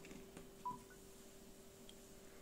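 A single short electronic beep a little over half a second in, the charging-connected sound of a Samsung Galaxy Tab Pro tablet as a USB cable is plugged in; a faint steady hum runs underneath.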